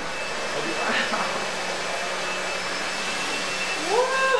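A hair dryer running, a steady blowing hiss.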